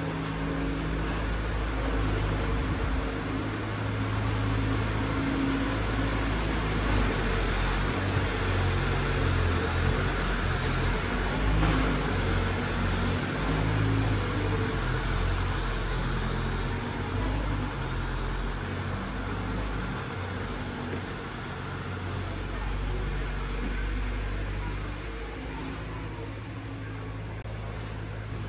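Street background of motor-vehicle noise with a low engine hum underneath, louder through the middle and fading somewhat toward the end.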